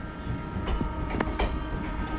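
Express train passenger coach rolling through a station, heard from its open door: steady wheel-on-rail rumble with a few sharp clicks from the track.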